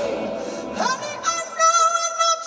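A singer performing live with a band of bass guitar and keyboards. A little before a second in, the voice slides up into a long, held high note over the accompaniment.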